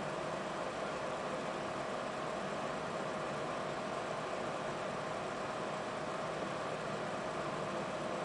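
Steady background hiss with a faint, unchanging hum, and no distinct sounds standing out.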